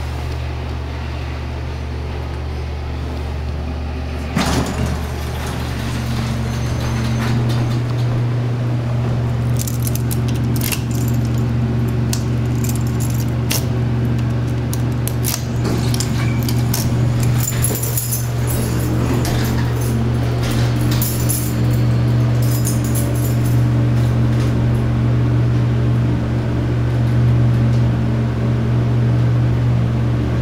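Dover hydraulic elevator running with a steady low hum, a second higher hum joining about six seconds in. A single clunk comes about four seconds in, and keys jangle and click in the car's key switches through the middle.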